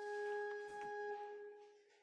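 Organ holding a single soft sustained note that fades away about three quarters of the way through.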